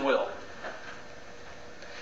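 A man's voice finishing a word, then a pause of low room tone with a faint steady hum.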